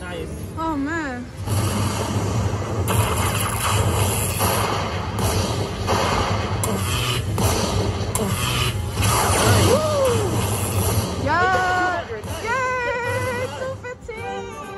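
Lightning Link Happy Lantern slot machine playing its win sound effects: several seconds of electric crackling over a low rumble while the bonus win tallies up. Sliding, wavering tones come near the start and again near the end.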